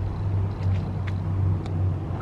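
A motor vehicle's engine running with a steady low hum that swells and eases slightly, with a few faint clicks.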